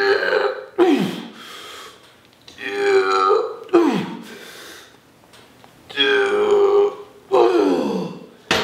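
A man's loud straining vocal noises on each rep of a heavy overhead cable triceps extension, forced out as he exhales under the effort. The pattern repeats about three times: a long held groan, then a short sharp cry that drops in pitch.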